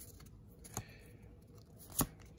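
Pokémon trading cards being handled and slid between the fingers: faint rustle with a light click under a second in and a sharper card snap near the end.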